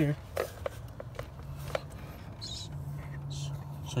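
Faint scattered clicks and rustles of hands and parts being handled in a car's engine bay, with a low steady hum coming and going in the background.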